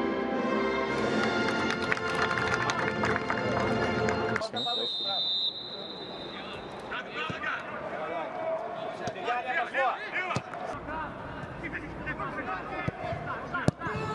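Music for the first four and a half seconds, then a cut to live pitch sound: a short high whistle blast, followed by footballers shouting to each other and a couple of sharp thuds of the ball being struck.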